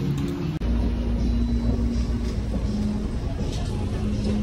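Escalator machinery running: a steady low rumble and hum that starts suddenly about half a second in.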